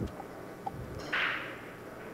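Quiet hall room tone with a brief soft hiss about a second in.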